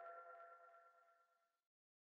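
Near silence: the faint tail of a ringing electronic chime dies away in the first second or so, followed by dead silence.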